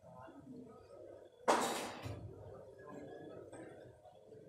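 Billiard balls struck hard on a nearby table: one loud, sharp crack about one and a half seconds in that rings briefly in the hall. A low murmur of voices runs underneath.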